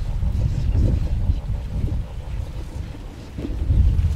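Wind buffeting the handheld recorder's microphone: an uneven low rumble that rises and falls in gusts, dipping about three seconds in and swelling again near the end.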